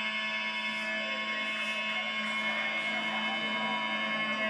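Harmonium holding one steady chord, a rich reedy drone that does not change in pitch or loudness.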